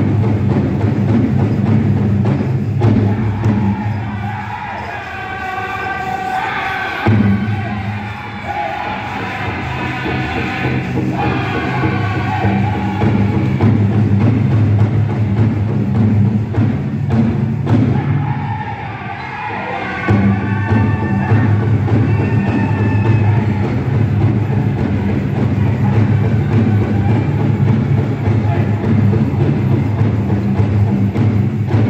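Powwow drum group playing a jingle dress song: a big drum beaten steadily under a chorus of singing voices. Twice the drum drops back for a few seconds while the voices carry on.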